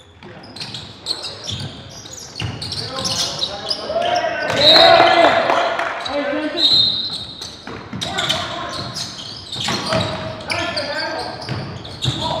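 Basketball game sounds in a gym: a ball bouncing on the court with repeated sharp knocks, and players' shouts and calls echoing in the hall, loudest around the middle.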